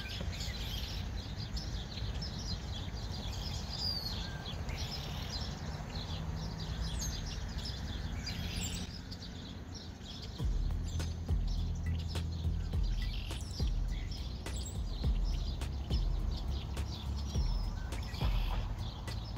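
Many birds chirping and calling at once, short overlapping calls throughout. About ten seconds in, a louder low steady drone starts beneath them.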